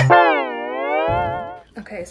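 Background music cutting off at the start, followed by one long sung 'la' that slides down in pitch and back up, lasting about a second and a half.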